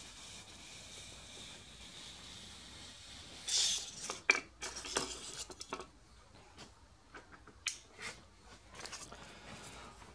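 High-density foam block sliding along a steel drill-press table and fence through a hot-wire cutter: a faint steady rubbing hiss, then a louder rustle about three and a half seconds in. Light clicks and knocks follow as the foam and the cut slice are handled against the table.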